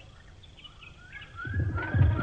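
Bird chirps in a cartoon soundtrack: a quick series of short rising calls, about three or four a second. About one and a half seconds in, a loud low rhythmic pulsing joins them.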